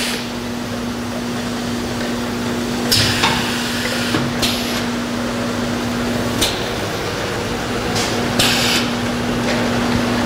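Bottling line running: a steady drive hum with a constant low tone from the rotary accumulation table and conveyor, with a few short clatters of empty plastic bottles knocking together on the turntable.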